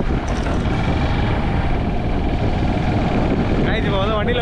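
Steady, loud rumble and rush of wind buffeting an action-camera microphone outdoors. A man's voice starts just before the end.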